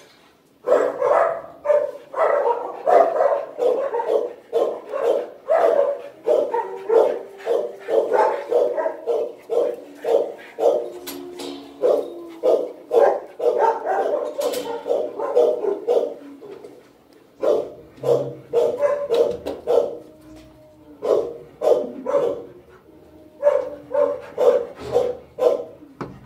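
Dogs in a shelter's kennels barking over and over, several barks a second. The barking eases off for a few seconds past the middle, then picks up again near the end.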